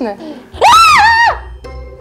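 A woman's short, loud, high-pitched shriek about half a second in, stepping down in pitch partway through. It is a startled reaction to live crayfish moving under her hands.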